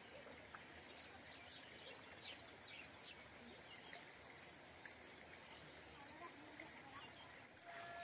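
Near silence: faint outdoor background noise with a few faint, short high chirps.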